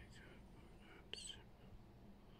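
Near silence with a faint whisper, hissy and unvoiced, and a soft click about a second in.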